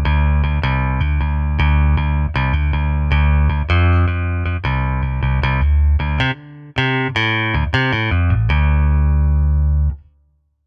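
Sampled J-style electric bass with roundwound strings, played with a pick: a busy bass line of many separate notes with a bright, crisp attack. The notes briefly drop away about six seconds in, and the line stops at the end.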